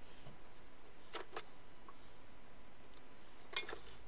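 A few light clicks and clinks, a pair about a second in and another pair near the end, over quiet room tone: a tool being picked up and handled on the timber floor frame.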